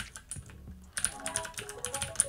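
Mechanical keyboard with clicky blue switches being typed on, a few scattered key clicks and then a quick run of clicks from about a second in. Background music plays underneath.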